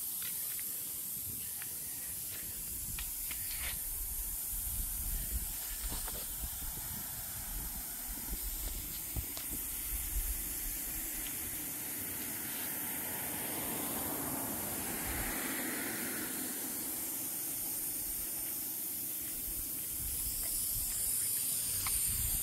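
Pop-up spray heads of an automatic lawn sprinkler system spraying water in fans across the grass: a steady hiss.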